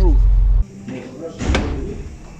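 A loud, steady low rumble that cuts off abruptly just over half a second in, then a single sharp slam about a second and a half in.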